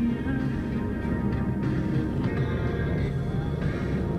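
Music with long held notes over a steady low rumble.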